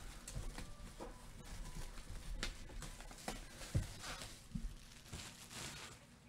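Faint handling of a cardboard box: soft rubbing and scraping with scattered light taps and clicks, a slightly louder knock near the middle.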